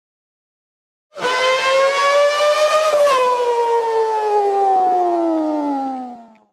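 After about a second of silence, a loud siren-like sound effect: one pitched tone that rises slowly, shifts abruptly about three seconds in, then falls steadily in pitch and fades out at the end.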